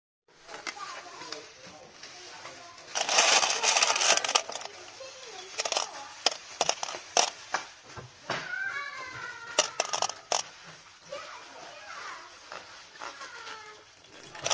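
Small hard epoxy resin aglets clicking and clattering against each other as they are handled by hand, with a louder rustling burst about three seconds in.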